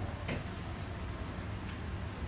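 Steady low background rumble with no clear events.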